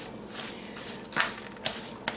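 Raw ground-venison meatloaf mixture being worked and squished in a plastic mixing bowl: a soft wet churning with two short squelches in the second half.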